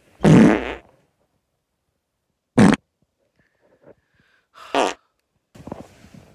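Three short, loud fart-like noises, each with a low buzzy base, about two seconds apart.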